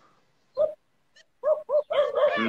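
A dog yipping through a phone call's audio: one short yip about half a second in, then three quick yips near the end.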